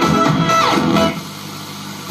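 Sanyo M-X960K radio-cassette player's receiver being tuned across stations: a broadcast of guitar music plays through its speakers with a falling tone as the dial moves, then about a second in it drops to a quieter stretch between stations.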